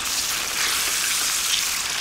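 Tomato sauce of chopped tomatoes and tomato paste sizzling in hot olive oil in a pan: a steady, even hiss.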